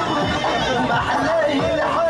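Voices and crowd chatter over traditional folk music, with a wavering, held melody note coming in about halfway through.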